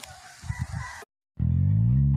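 Faint outdoor yard ambience with a few short, high calls, then, after a sudden cut to a moment of silence about a second in, a loud, buzzy synthesized tone whose pitch bends up and then down. The tone opens an outro jingle.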